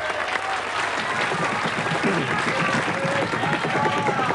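Studio audience applauding and cheering at the start of a round.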